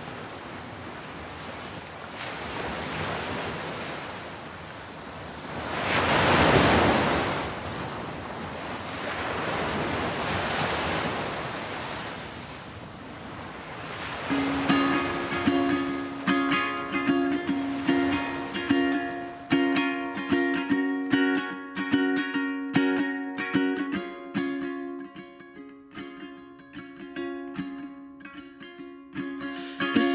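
Surf washing onto a beach, the rush of water swelling and falling back about three times. About halfway through a ukulele starts playing a rhythmic chord intro and the waves fade out beneath it.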